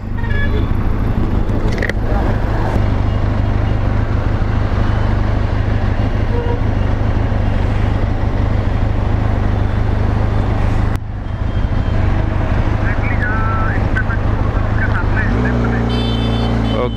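Benelli TRK 502X's parallel-twin engine idling as a steady low rumble, with road traffic passing. A short click and a brief dip in level come about eleven seconds in.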